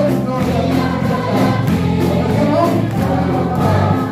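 A congregation singing a hymn together in chorus, a man's voice on a microphone leading, with hands clapping along.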